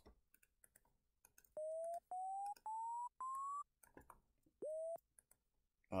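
A downsampled sine-wave synth patch in Serum with coarse pitch movement, playing short beeps. Four come in quick succession, each gliding up slightly and each starting higher than the last. About a second later a fifth swoops up from low. Faint mouse clicks come before the notes.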